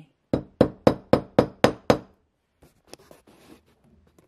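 Polished leatherworking hammer tapping gently on baseball stitches in a leather wrap over a hollow tool handle: seven quick, light blows, about four a second, flattening the stitches so the holes close. Faint handling noise follows.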